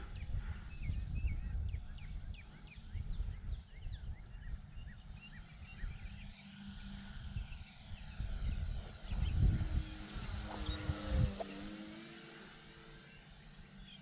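Radio-controlled model P-51B Mustang flying by, its motor's hum dropping in pitch as it passes about ten to twelve seconds in. Wind rumbles on the microphone throughout, and birds chirp in the first few seconds.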